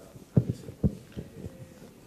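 Handheld microphone being handled as it is passed to the next questioner: a few dull, low thumps, four of them within about a second, over faint room noise.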